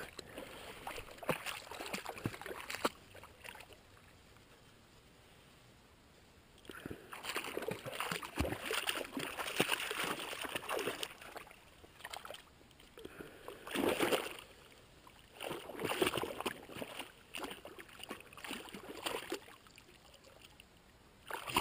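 A dog wading and splashing through shallow lake water at the shoreline, in uneven bursts with a quiet pause of a few seconds early on.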